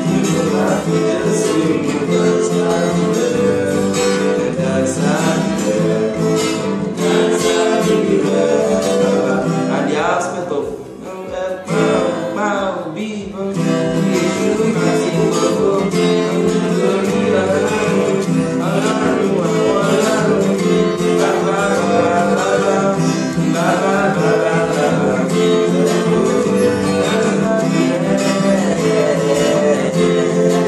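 Acoustic guitar strummed steadily through a simple chord progression, with a voice singing along at times.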